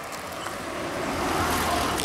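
A small car driving past on an asphalt road: engine and tyre noise grow steadily louder as it approaches and are loudest about a second and a half in as it passes.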